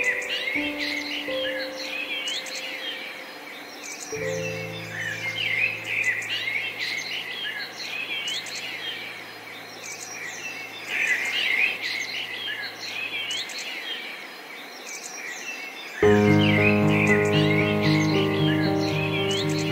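Songbirds chirping and singing over gentle piano music. A low chord holds for several seconds, then the piano drops out and the birds carry on alone, until louder piano comes back in about two seconds before the end.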